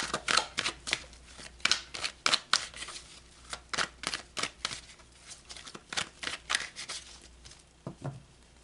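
A tarot deck being shuffled by hand: a run of quick, irregular card slaps and flicks, several a second, easing off near the end.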